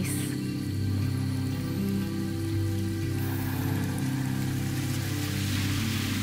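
Soft background music of slow, held low notes, with a steady rain-like hiss over it.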